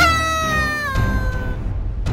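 A single drawn-out high-pitched cry, sharply rising at the start, then sliding down with a sudden step lower about a second in and fading out soon after, over background music.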